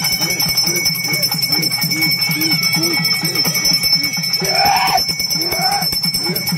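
Festival music: a low note that bends up and down repeats about twice a second over steady bell ringing. Just before the end, a louder sliding call rises above it.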